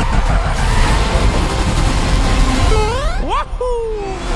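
Animated go-kart racing sound effects: engines and rushing speed noise, dense and loud. Near the end a pitch sweeps steeply upward, the sound briefly thins, and a tone falls away.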